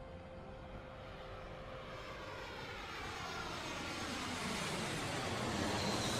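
Jet airliner flying past, its engine roar building steadily to its loudest near the end, with a hollow sweeping tone running through the noise.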